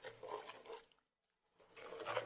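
Faint sloshing of water poured into a clay pot of curry paste and stirred with a wooden spoon. It drops to near silence for about a second in the middle.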